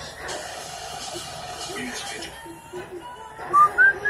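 Background voices from a TV or room chatter, then, in the last half second or so, a few short whistled notes that each glide upward; these whistles are the loudest sound.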